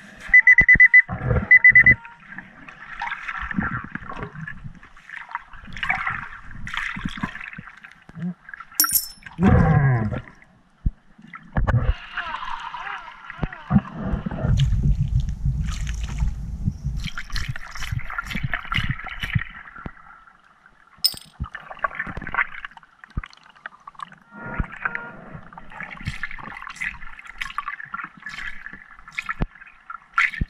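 Water heard as snorkelers dive in a river: gurgling and bubbling underwater, with splashes at the surface.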